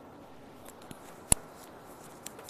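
Handling noise as a phone is held and moved: a few faint ticks, then one sharp click about a second and a third in, over a steady faint outdoor background.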